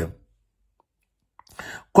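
Speech only: a voice finishes a phrase, pauses for about a second, then the next word starts near the end.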